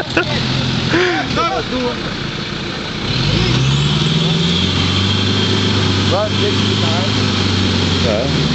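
Classic Range Rover engine working under load as the 4x4 pushes through a deep mud rut, revs rising about three seconds in and then held steady.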